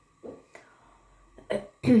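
A woman coughing twice in quick succession near the end: two short, sharp coughs, the second louder and running straight into her voice.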